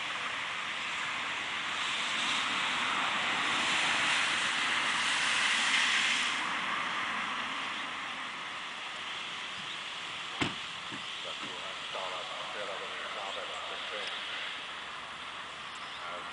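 Wind rushing through the trees and over the microphone, rising to a gust about six seconds in and then easing off. There is a single sharp knock about ten seconds in, and faint distant voices can be heard in the later part.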